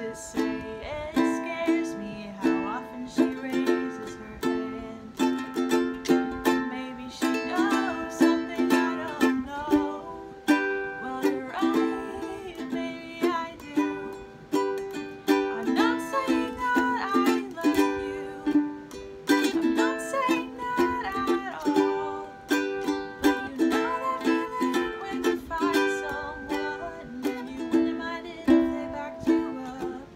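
Ukulele strummed in a steady rhythm, chord after chord, with a woman's voice singing a gentle melody over it in a small room.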